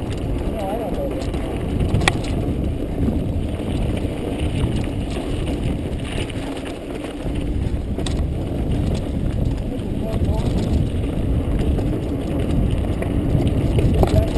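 Mountain bike descending rocky dirt singletrack, heard from a GoPro riding with it: a steady low rush of wind on the microphone and tyre noise, with bike rattle and a few sharp knocks as it rolls over rocks.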